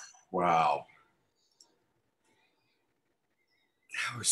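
A person's short voiced sound, like a hummed "mm", lasting about half a second, then near silence broken by one faint click.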